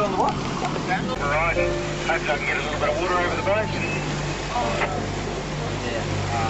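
Watercraft engine running with a steady low drone, under a rush of wind and water noise. Indistinct voices sound over it for the first few seconds.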